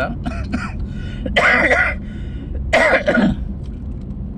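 A man coughs twice, two short harsh bursts about a second and a half apart, inside a moving car's cabin with a steady low engine and road rumble.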